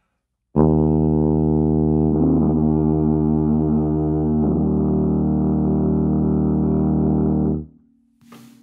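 E-flat sousaphone played with multiphonics: one long, steady low note buzzed on the mouthpiece while the player sings a second pitch through it, which wavers in about two seconds in and shifts near the middle. The note stops suddenly just before the end.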